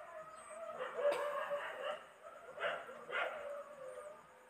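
Faint animal calls in the background: a drawn-out pitched call, then several shorter calls.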